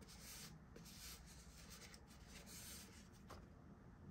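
Near silence: faint rubbing and rustling of hands, several short scrapes in the first half and a small click near the end.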